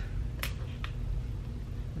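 Two short, sharp clicks about half a second apart, the second fainter, over a low rumble of handling noise.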